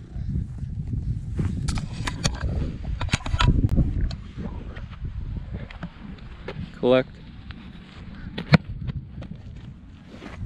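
Low rumbling wind and handling noise on a moving camera's microphone, with scattered clicks. Near the end a short rising call is heard, then a single sharp thump of a boot striking a football.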